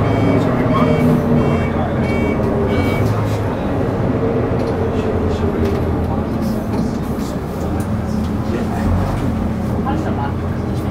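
Engine of a preserved Leyland Titan double-decker bus running as it drives, heard from inside the lower deck as a steady low drone with road noise.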